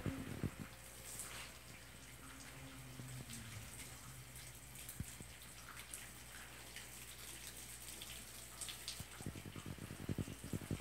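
Garden hose spray wand sprinkling water onto plants in a raised bed: a faint, steady hiss and patter of falling water, with a few low thumps near the start and near the end.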